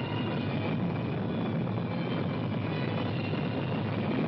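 Film sound effect of a spaceship's rocket engine firing: a steady, even rushing noise of exhaust.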